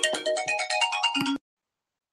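A short electronic melody of quick, stepped notes that cuts off suddenly about a second and a half in.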